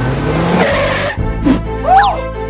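Car sound effect: an engine revving up with a rising pitch and a rush of tyre noise, cutting off about a second in, over background music. A sharp click and a brief rising-and-falling sound follow near the end.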